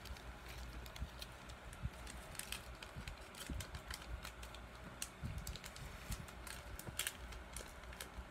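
Pokémon trading cards being handled and flipped through by hand, with faint, irregular clicks and rustles of card sliding on card.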